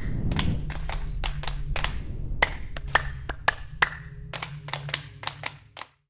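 Outro logo sound effect: an irregular run of sharp clicks and ticks over a low steady hum, with a low swell at the start, fading out just before the end.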